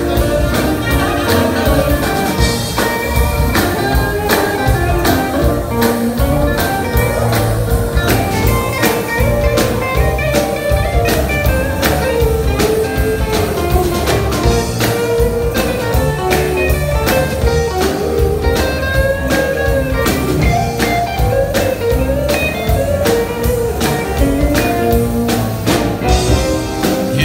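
Live band with electric guitar, saxophone, keyboard, upright bass and drum kit playing an instrumental break in a blues/R&B song over a steady drumbeat, with no vocals.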